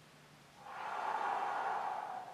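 A man's long, breathy exhale, starting about half a second in and fading over about two seconds, as he holds a standing wall plank and draws his navel in with the breath.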